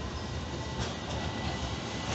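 Sirio light-rail tram rolling past on its tracks: a steady low rumble with a thin, steady high whine.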